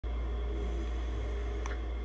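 Steady low hum with a faint hiss over it, and one small click about one and a half seconds in.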